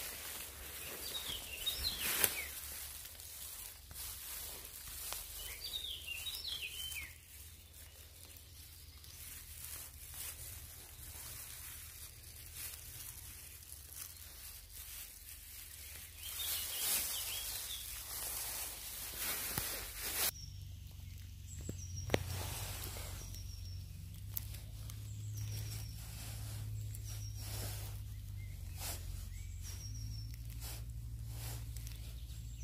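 Faint rustling and soft snapping of hands pulling wood ear mushrooms off a mossy dead branch, with birds chirping now and then. In the later part a bird repeats a short, high, falling call about once a second.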